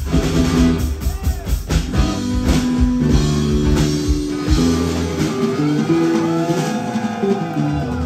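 Live roots-rock band playing an instrumental passage: electric lead guitar and strummed acoustic guitar over bass and drums. The lowest notes drop away for a few seconds past the middle, then return.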